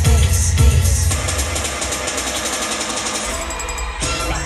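Live concert music over a loud PA, recorded from within the audience. A heavy bass beat runs for about the first second, then drops out, leaving a fast, even mechanical-sounding clatter until the drums come back in at the end.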